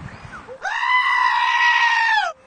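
A sheep giving one long, steady, scream-like bleat that starts about half a second in and is held at an even pitch.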